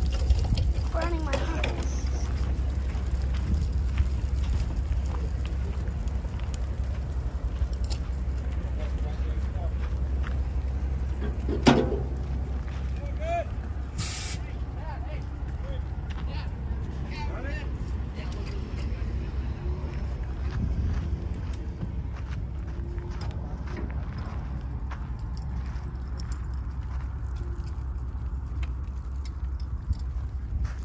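Fire burning under a semi trailer's axles, with a steady low rumble, light crackling, one sharp pop about twelve seconds in and a short hiss about two seconds later.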